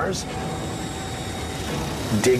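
A steady rushing noise with a faint held tone in it: a soundtrack ambience bed.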